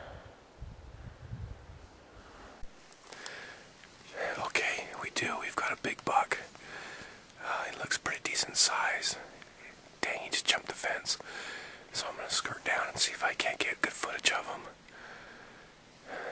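A man whispering close to the microphone in short phrases, starting about three seconds in.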